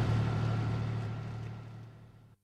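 Steady low engine-like hum with background noise, fading out over the two seconds.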